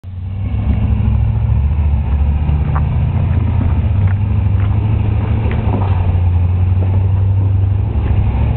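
Dodge Ramcharger's V8 engine running steadily at low revs under load as the truck crawls up a rocky slab, with a few short sharp knocks scattered through it.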